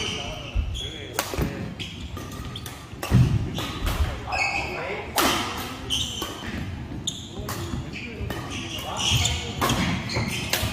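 Badminton rally: rackets striking the shuttlecock about once a second, with sneakers squeaking on a wooden court floor, echoing in a large hall.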